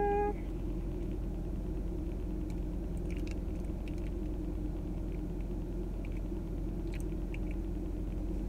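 Steady low hum of a car's interior with the vehicle running, with a few faint light clicks.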